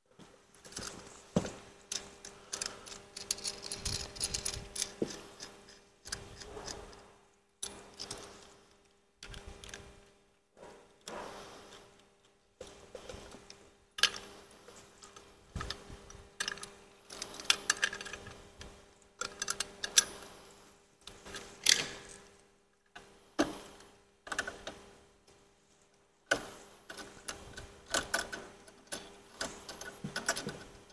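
Stainless-steel sanitary fittings clinking and rattling as a turbine meter is handled and fitted with tri-clamps: irregular sharp metal clicks in clusters, with short pauses between them.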